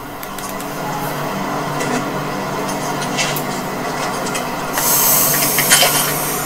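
A steady low hum of several even tones under a noisy rush, played back through a TV's speakers, swelling to a louder hiss near the end.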